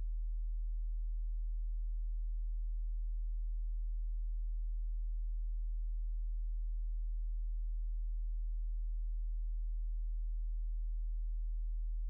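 A steady low-pitched hum: one unchanging deep tone with faint overtones above it.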